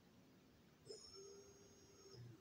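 Near silence, with a faint steady whine starting about a second in: the brushless motor, driven through its electronic speed controller, turning at low speed.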